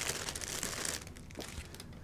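Clear plastic bag crinkling as plastic model-kit sprues are handled and drawn out of it, mostly in the first second.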